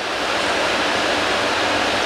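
Steady rushing noise like running water or wind, growing slightly louder about half a second in.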